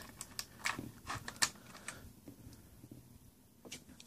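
Faint, light clicks and taps of small plastic parts being handled in a clear plastic blister tray. They come mostly in the first two seconds, then it goes almost silent, with one more click near the end.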